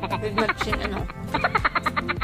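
A rapid run of short, croaking pulses, about ten a second, over steady background music.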